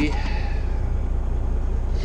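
Semi truck's diesel engine idling, a steady low rumble with an even pulse heard inside the cab.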